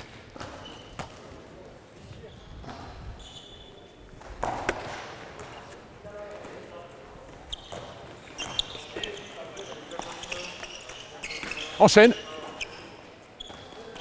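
A handball being bounced and caught during live play, heard as irregular sharp thuds in a reverberant sports hall, with brief squeaks of sports shoes on the court floor.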